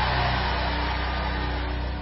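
Sustained low keyboard chords held under a noisy wash that fades away steadily.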